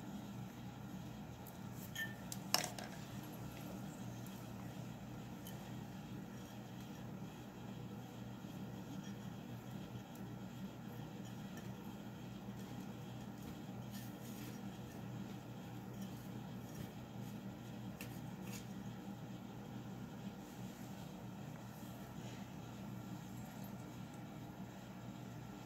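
Hand working dragonfruit cuttings and potting mix inside a tall glass jar: a sharp tap against the glass about two and a half seconds in, then a few faint ticks, over a steady low hum.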